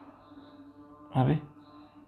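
A pause in a man's talk: a faint steady hum, broken about a second in by one short spoken syllable.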